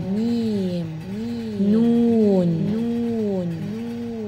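A voice altered by a voice-changer app, singing a repeating tune of about six swooping notes, each rising and then falling in pitch.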